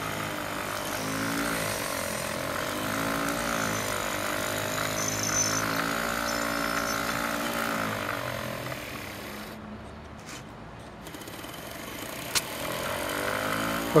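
Homemade pulse motor with a neodymium ball rotor and a make-and-break tape commutator running with a fast buzz whose pitch rises and falls as the rotor speeds up and slows down. It drops quieter and lower a little past the middle, then picks up again, with one click near the end.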